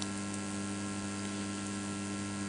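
Steady electrical mains hum from the microphone and public-address feed, a low buzz with a few higher tones stacked above it that holds unchanged throughout.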